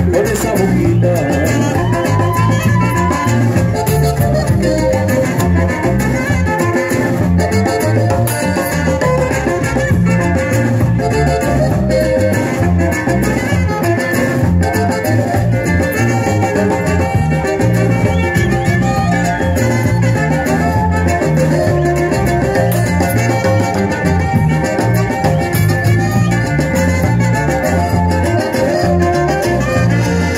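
Live norteño band playing an instrumental stretch of a song with no singing: saxophone, accordion, guitar, bass and drums over a steady dance beat.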